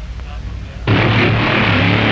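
Drag-racing car engines starting loud and abruptly about a second in: a low, steady engine drone under a wide roar as the cars launch off the line, after a low rumble.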